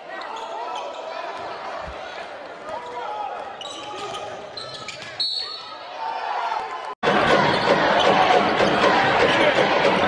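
Live college basketball game sound in an arena: a ball bouncing on the hardwood amid court and crowd noise. About seven seconds in the sound drops out for an instant, then comes back louder and denser with a bigger crowd.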